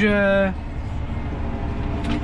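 John Deere 7R 290 tractor's six-cylinder diesel running steadily under way, heard from inside the cab as an even low rumble. A drawn-out spoken syllable covers the first half second.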